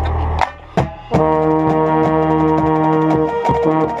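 Drum corps brass line, with a euphonium right at the microphone, coming in about a second in on a loud sustained chord, over quick, regular drum strokes. Before it, a low steady drone cuts off about half a second in, leaving a short dip.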